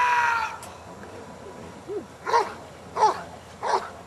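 A dog gives a series of sharp barks at an even pace, about one every 0.7 seconds, starting about two seconds in. It is guarding a motionless schutzhund helper after releasing the bite sleeve. A brief loud, steady high call sounds right at the start.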